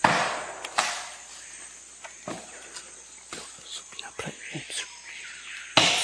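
Axe chopping into a standing tree: a few sharp, irregular strikes, loudest at the start, just under a second in and near the end, with lighter knocks between, over a steady high drone of rainforest insects.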